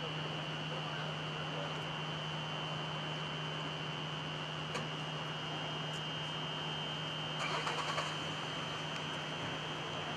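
Steady outdoor city background noise, traffic-like, with a constant low hum and a steady high-pitched whine underneath, and a brief faint rustle about three-quarters of the way through.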